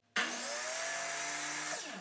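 DeWalt miter saw switched on with a sudden start and a rising whine, its blade brought down through a small piece of wooden chair rail molding to cut the end cap. Near the end the trigger is released and the motor winds down, its whine falling in pitch.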